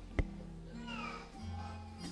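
Soft held low chord from the church band's keyboard, with a click near the start and a brief high falling whine about a second in.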